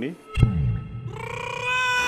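Editing sound effect: a sharp hit with a falling low boom about half a second in, then a held, steady pitched note lasting about a second, cartoon-like and close to a meow.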